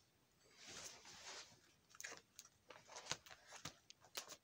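Faint rustling and crinkling of plastic card-sleeve pages being handled and turned in a ring binder: a soft swish, then a scatter of small clicks and crackles, the sharpest about three seconds in.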